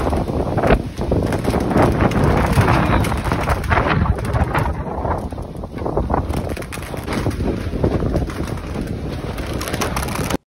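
Strong gusty wind buffeting a phone's microphone: a loud, unbroken rumble that rises and falls with the gusts.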